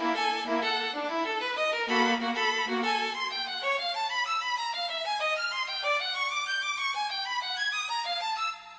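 Computer-rendered solo violin playing a fast passage of many short notes.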